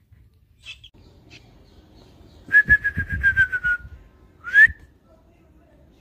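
A person whistling: a long whistled note, falling slightly and pulsing rapidly, comes about two and a half seconds in. It is followed near the end by a short upward whistle.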